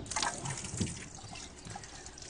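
Water splashing and trickling as things are washed by hand in a sink.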